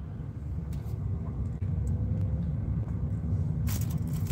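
Low road and tyre rumble inside a moving car's cabin, growing louder as the car picks up speed. Near the end comes a brief rustle as the camera is handled.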